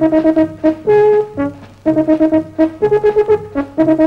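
Background music: brass instruments playing a rhythmic melody of short repeated notes, with one longer held note about a second in.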